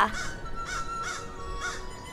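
Crow cawing repeatedly, about two calls a second, over soft background music.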